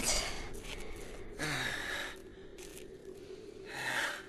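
A person's breathing after exertion: a few breathy gasps and sighs a second or two apart, one with a low falling voiced sound about a second and a half in.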